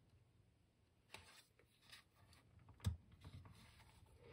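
Near silence with faint handling of a cardboard board book as a page is turned: a few light scratches, then a single soft knock about three seconds in as the stiff page is laid down.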